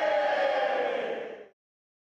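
A group of children and players shouting one long cheer together, the pitch sliding slowly down before it stops about a second and a half in.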